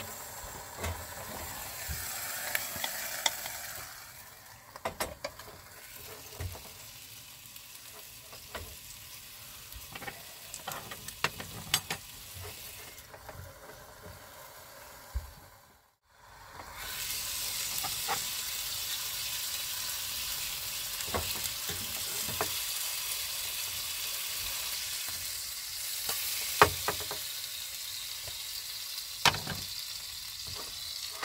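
Meat sizzling in a pan on a gas hob, a steady hiss, with sharp clinks of cutlery on a plate. The sound dips out briefly about halfway through and comes back a little louder.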